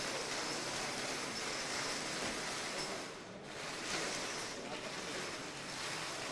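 An audience applauding in a hall, in two swells of clapping with a short dip a little past the middle.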